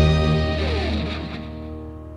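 Closing music: an electric guitar chord ringing out and fading away, with a pitch sliding downward about half a second in.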